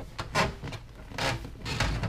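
Rubbing and knocking as the backrest's inside bar is forced into the cut seat foam and the seat is handled, in a few short strokes.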